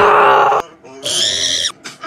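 A loud, harsh, distorted scream in two bursts. The first, very loud one lasts about half a second, and a second, higher and shriller one comes about a second in.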